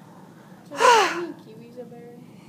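A single short, breathy vocal exclamation about a second in, its pitch falling.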